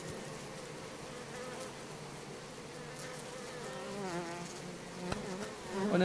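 A colony of Western honeybees buzzing as one steady hum at a crowded hive entrance. Around four seconds in, one insect's buzz wavers up and down in pitch as it flies close, and a single sharp click comes a little after five seconds.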